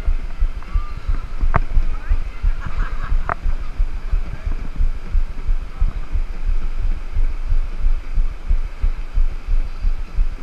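Wind buffeting a GoPro's microphone high on a building's edge: a loud, low, rapidly fluttering rumble, with two sharp clicks, one about a second and a half in and one about three seconds in.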